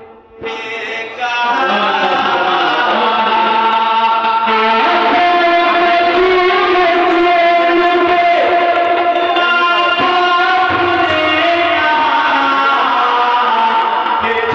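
A man's voice singing devotional verse (kalam) into a microphone, in long held notes that bend and glide. The sound drops out briefly at the very start, then resumes.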